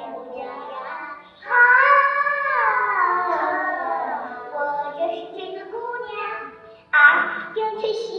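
Young girls singing a Chinese song on stage: phrases of long held and gliding notes, a loud line beginning about a second and a half in and another near the end, with short gaps between lines.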